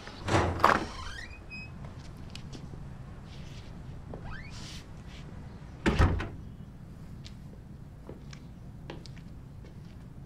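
A door banging shut about six seconds in, after a louder clatter near the start. Faint ticks sound in between over a low steady hum.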